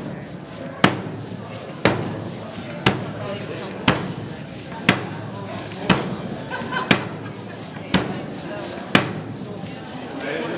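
Hand ink roller rolled back and forth over a lithographic stone, inking it, with a sharp knock about once a second in a very even rhythm. Voices murmur in the background.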